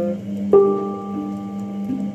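Hang drum (handpan) notes ringing: a low note sustains steadily underneath while a fresh note is struck about half a second in and rings on, with a softer strike near the end.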